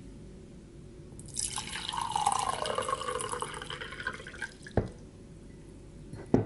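Water poured into a glass mug for about three seconds, starting a little over a second in, with the tone of the pour sinking in pitch as it goes. A single sharp knock follows near the end.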